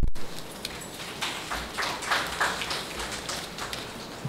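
Audience applauding: a patter of many hand claps.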